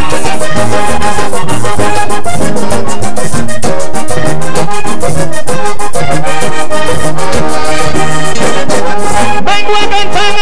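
Vallenato band playing an instrumental passage between sung verses: a diatonic button accordion carries the melody over a steady beat of hand percussion and a low bass line.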